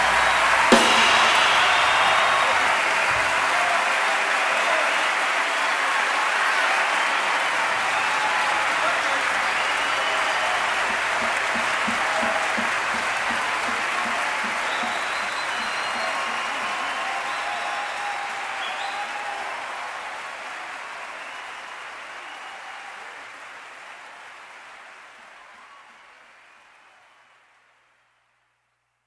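Live audience applauding and cheering at the end of a jazz performance, with scattered shouts and whistles over the clapping. A single sharp hit comes less than a second in, and the applause fades out gradually over the last ten seconds.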